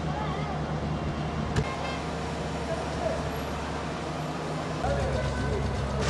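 Street sound of a vehicle engine running steadily, growing louder near the end, under background voices, with a single sharp click about one and a half seconds in.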